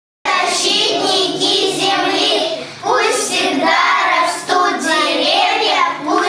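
A group of young children singing together in unison, starting just after the opening moment.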